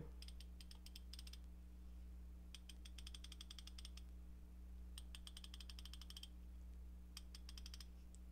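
Koken Zeal 3/8-inch flex-head ratchet with the new 72-tooth mechanism being ratcheted by hand, the pawl giving fine, rapid clicks in four short bursts.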